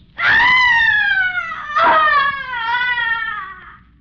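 A person's blood-curdling shriek of frustration and anguish: a long, high-pitched cry that sinks slowly in pitch, breaks into a second cry just under two seconds in, and fades away near the end.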